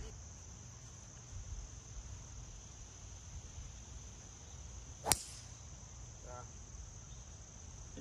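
Steady high-pitched insect chirring in the background, with a single sharp crack about five seconds in: a golf club striking a ball off the tee.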